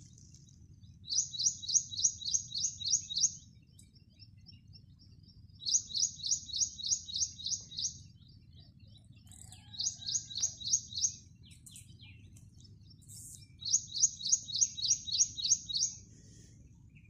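A small bird calls in four bouts, each a rapid series of about eight to nine sharp high notes at roughly four a second. A faint, steady low rumble runs underneath.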